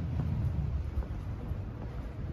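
Low, uneven outdoor rumble of wind buffeting the microphone over city traffic.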